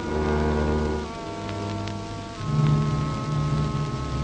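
Orchestral film score of low chords, each held, which shift about a second in and again past two seconds, over the hiss and occasional crackle of an old film soundtrack.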